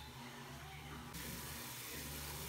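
Low room hum, then from about a second in a faint steady sizzle of chopped onions and bell peppers sautéing in a stainless steel pot.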